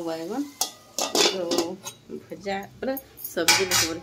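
Steel kitchen pots and utensils clinking and clattering, with a woman talking over them in short phrases.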